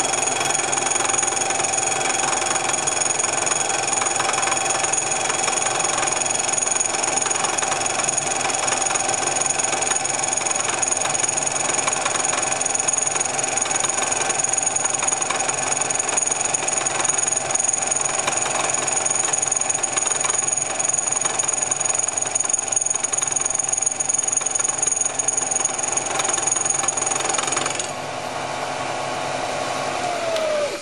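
Vertical milling machine running steadily while its cutter takes a facing cut across the crown of an aluminium hypereutectic piston to reduce its compression height, with a high-pitched whine over the spindle hum. The high whine stops near the end.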